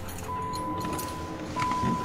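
Car keys jangling as the driver handles them at the ignition, with a steady high tone that starts just after the jangle and breaks off briefly midway, over background music.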